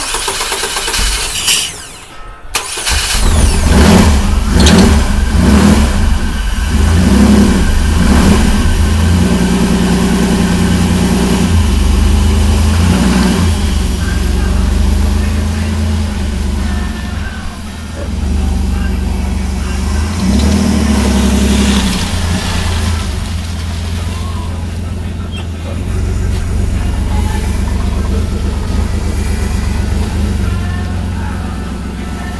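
An old project truck's engine cranked and catching about three seconds in, then revved several times and running steadily as the truck is driven off.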